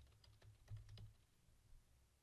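Faint computer keyboard typing: a quick run of key clicks through the first second and a half, then near silence.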